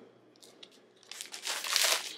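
Clear plastic retail packaging crinkling as it is handled and put down, a short crackly rustle starting about a second in after a few faint ticks.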